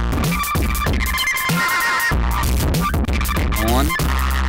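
Electronic drum beat from a Dave Smith Tempest analog drum machine played through an Elysia Karacter saturation unit with its FET Shred distortion mode switched off. It has deep booming kicks, high ticking hats and sliding pitched tones that repeat in a loop.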